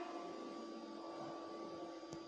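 Faint room tone with a steady electrical hum, holding a few constant tones.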